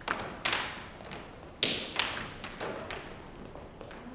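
A series of about six sharp, irregularly spaced knocks or taps with short echoes, the loudest about a second and a half in.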